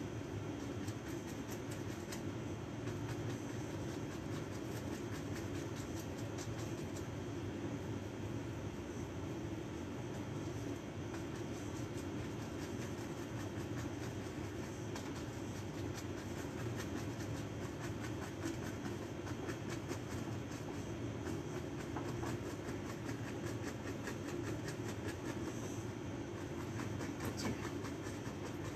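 Steady low rumbling background noise, with faint soft scratching and tapping of a small paintbrush working oil paint on a canvas.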